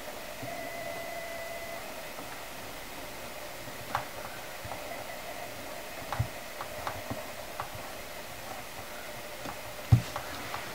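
Fine-tip Sharpie marker writing on a plastic clothes hanger: faint soft ticks of the tip touching and lifting, heard over a steady room hiss, with a sharper light knock near the end.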